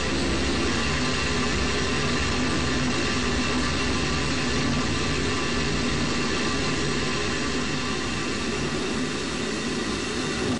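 Space Shuttle solid rocket booster burning during ascent, picked up by a camera mounted on the booster: a loud, steady rumble with no breaks. The booster is late in its roughly two-minute burn.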